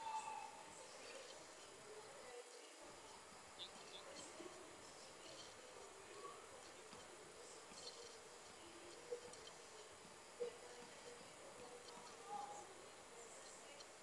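Near silence: faint sports-hall ambience, with a few soft, short ticks.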